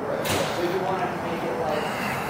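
Repair-shop background: distant voices of people talking over a steady hiss of room noise, with one brief knock about a quarter second in.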